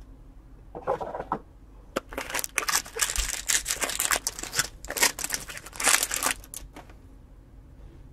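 A foil-wrapped pack of 2021 Topps Series 1 baseball cards being torn open by hand. The wrapper crinkles and rips in a brief rustle about a second in, then in a dense run of crackling tears for about five seconds.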